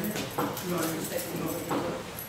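Indistinct voices of people talking in a meeting room, too unclear for words to be picked out.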